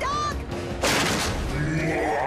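A single loud cartoon crash sound effect about a second in, a wall being smashed through, over background music.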